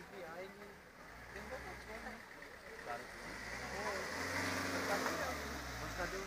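An ambulance van drives close past: its engine hum and the hiss of its tyres on the wet road build from about a second in and are loudest near the end.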